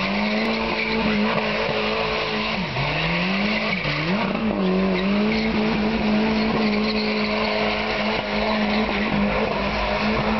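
Car engine held at high revs during a burnout, its rear tyres spinning and squealing on the pavement. The revs dip and climb back twice, about three and four seconds in, then hold steady.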